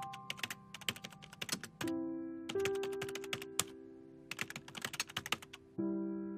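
Typing sound effect: rapid keyboard clicks in three quick runs, over slow, sustained piano notes.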